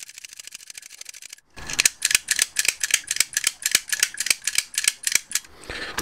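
Lock pick working the pins of a pin-tumbler cylinder loaded with spool pins and stiffer Lockwood-style springs. It starts with a fast, rattling run of fine metallic ticks for about a second and a half, then after a short pause gives repeated sharp clicks, several a second.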